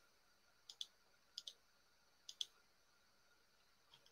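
Computer mouse clicking: three quick pairs of clicks, under a second apart, in near silence.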